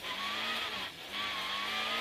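Peugeot 106 rally car's engine heard from inside the cabin, pulling hard with its note climbing steadily; the note breaks and dips briefly about a second in, then climbs again.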